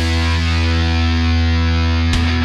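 Heavy metal song: distorted electric guitar and bass hold one sustained chord, ringing steadily with no drum hits.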